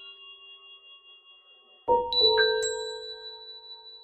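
Bell-like chime tones in music. Earlier notes fade out, then about two seconds in a quick run of about four struck notes rings on and slowly dies away.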